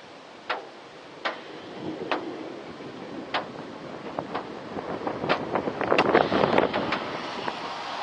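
Rain falling, with scattered sharp drops tapping on a hard surface close by. The taps come faster and the rain grows louder from about halfway, then eases slightly near the end.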